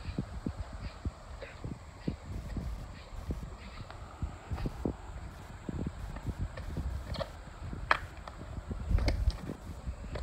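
Footsteps on hard ground at a creek's edge: irregular short knocks and scuffs, with a few sharper clicks near the end and a louder bump about nine seconds in.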